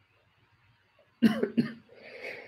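A man coughing twice in quick succession, starting about a second in.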